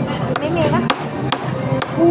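A toddler tapping a metal spoon on a table covered with a paper placemat: four sharp taps, about half a second apart.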